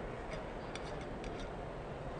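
Faint, irregular light clicks and ticks of a metal screw lid being twisted off a glass canning jar, over steady low room noise.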